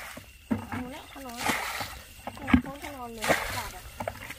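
Muddy water splashing several times as it is bailed out of a shallow puddle with a bucket.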